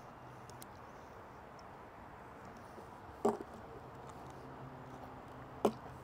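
A man drinking from a plastic sports-drink bottle: a faint steady background hum, with two short swallowing sounds, about three seconds in and again near the end.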